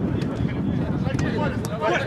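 Men shouting during a football match, over a steady low rumble of wind on the microphone, with a few short knocks.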